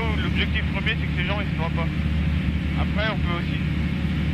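Steady drone of a single-engine light aircraft's engine and propeller heard inside the cockpit, under a man talking.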